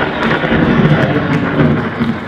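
Thunder sound effect played over a loudspeaker system, a loud rolling crash that starts suddenly.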